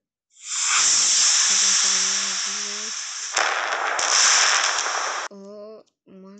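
Intro sound effect from the app's mp3 track playing in preview: a loud hissing burst of noise that starts about half a second in, shifts with a sharp click about three and a half seconds in, and cuts off suddenly just after five seconds.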